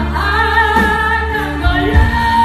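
A woman singing live into a microphone over a pop backing track, holding one long wavering note over a steady heavy bass.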